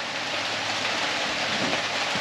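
Steady rain falling, a continuous even hiss with no breaks.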